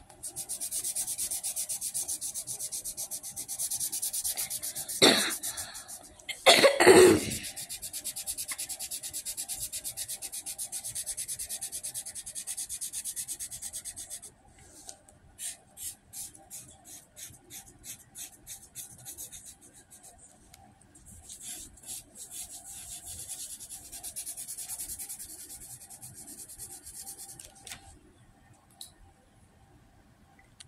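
Fast, steady scratchy rubbing very close to the microphone, which breaks up into separate scrapes about halfway through and then picks up again. Twice, about five and seven seconds in, a person coughs, louder than the rubbing.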